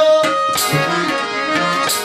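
Harmonium playing held chords and a melody with a few tabla strokes, under a man singing in South Asian style.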